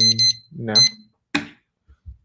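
Electronic timer beeping: three short, high beeps in quick succession as a prep timer is started, followed by a single sharp click.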